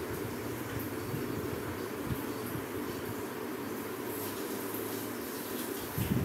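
Steady frying noise from a pan of onions and tomatoes cooking on the stove: a low rumble under an even hiss, with a faint click about two seconds in.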